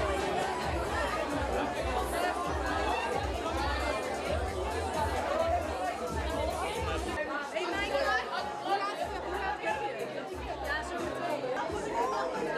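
Crowd of young people talking at once, a dense chatter of many voices, over background music with a steady bass beat.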